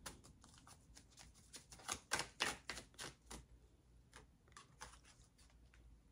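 Faint hand-shuffling of a tarot deck: a run of quick, light card clicks and slaps, most of them in the middle stretch, then sparser.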